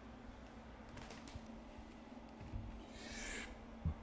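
Quiet room with a person shifting on a couch and setting a laptop aside: a few light clicks and rustles, a short breathy hiss about three seconds in, and a soft thump near the end.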